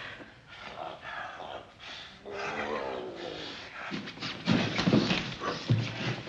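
Two heavyweight wrestlers grappling, straining with grunts and groans, including one long drawn-out groan about midway. A couple of heavy thumps of bodies come in the second half.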